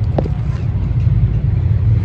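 A steady low rumble, with a short falling tone about a quarter second in.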